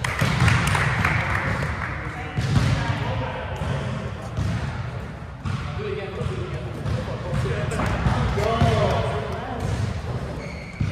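A volleyball being hit and bouncing on a hardwood gym floor: several sharp thuds a couple of seconds apart, with players' voices calling between them.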